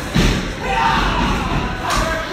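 Wrestling ring impacts: two thuds, the louder just after the start and another near the end, from wrestlers hitting the ring mat, with crowd voices between.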